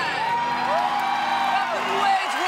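Two men shouting the closing words of a short rock theme chant over a held electric-guitar chord that stops near the end, with a studio audience whooping and cheering.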